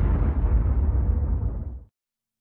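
Cinematic boom sound effect of a logo intro: its deep tail holds on and cuts off suddenly just before the end.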